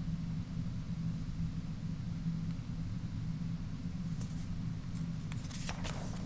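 Steady low room hum, with faint paper rustling near the end as a picture book's page is handled and turned.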